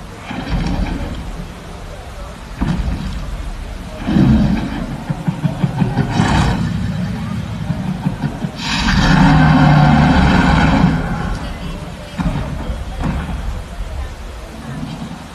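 Dinosaur growls and roars played over loudspeakers as part of a giant-screen Giganotosaurus display, in several surges, the loudest a long roar of about two seconds, a little over halfway through.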